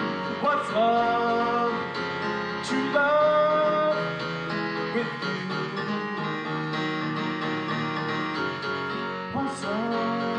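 Live song on a digital piano keyboard, chords played steadily, with a male voice singing long held notes over it.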